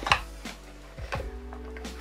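Cardboard packaging being handled: two light knocks about a second apart as a cardboard tray of vacuum accessories is lifted out of its box, over faint background music.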